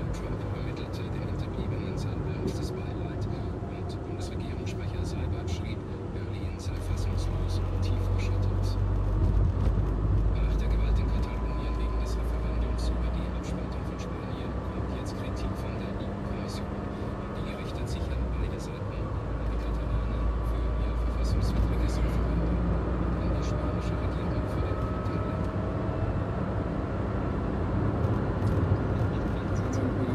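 Car cabin noise while driving: a steady low engine and road rumble that swells and eases, with slow rising engine tones as the car picks up speed.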